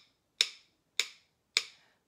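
Rhythm sticks tapped together in a steady count-in beat, three sharp wooden clicks about 0.6 s apart, each with a short ringing tail.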